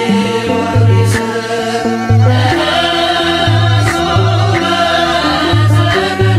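Ethiopian Orthodox mezmur hymn, chant-like singing over an instrumental backing with a repeating pattern of sustained bass notes.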